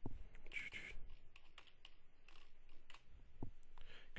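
Faint typing on a computer keyboard: a run of irregular key clicks.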